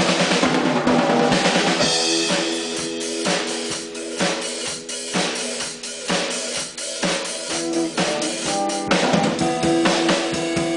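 Yamaha acoustic drum kit and electric guitar playing a rock piece together. The kit keeps a busy beat on bass drum, snare and cymbals, with a cymbal crash about two seconds in, under the amplified guitar's sustained chords.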